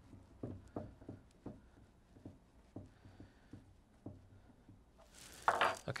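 Faint, irregular metal clicks and light knocks as a wrench turns the helical rotor mechanism off the submersible pump's reverse-threaded shaft.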